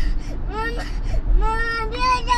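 Toddler crying in protest at being strapped into his car seat: a short cry, then a long drawn-out wail starting just past a second in. A steady low rumble from the moving car runs underneath.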